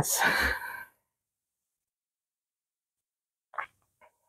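Near silence after a last spoken word, broken by one brief soft sound near the end, such as a breath or a rustle of fabric.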